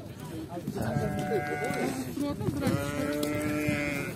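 Sheep bleating: two long calls, each held at a steady pitch for about a second, the second starting just after the first ends.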